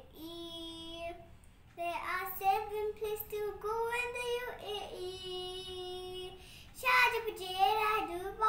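A young girl singing a children's song solo, holding some notes long.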